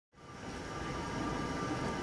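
Steady room noise with a faint hum, fading in from silence over the first half second.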